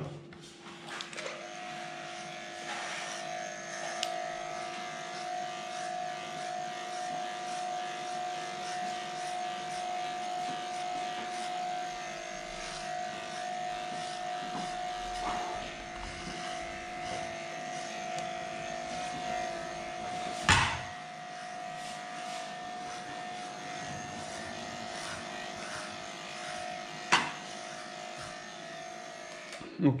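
Electric pet hair clipper with a comb attachment running steadily as it shaves a matted dog's body coat, a steady hum that takes on a higher note about a second in. Two sharp knocks break in, about two-thirds of the way through and again near the end.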